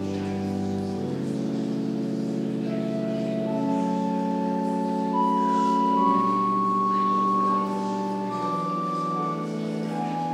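Church organ playing slow, sustained chords that change every second or two, with a higher held melody line coming in partway through and swelling loudest a little past the middle.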